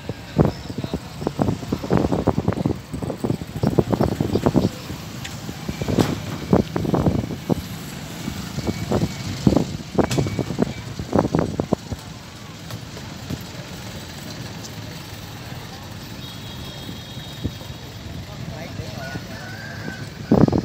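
People talking outdoors, their voices coming and going for about the first twelve seconds, then dying away into a steady low background rumble.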